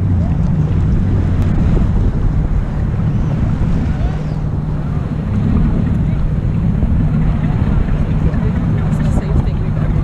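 Wind on the microphone over the steady low drone of a tow boat's engine running, out on open water.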